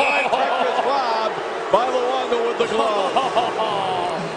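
The end of a steady whistle tone in the first moment, at the stoppage after a save. After it come indistinct voices over the noise of a hockey arena crowd.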